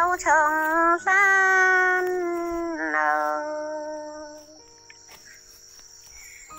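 A woman singing a Dao folk love song over sustained instrumental backing. Long held notes slide downward and fade away about four seconds in, leaving only quiet steady backing tones.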